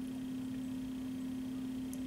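A steady low hum on one even pitch over faint room noise, with a faint tick near the end.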